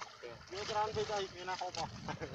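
Quiet talking voices, with short phrases from about half a second in.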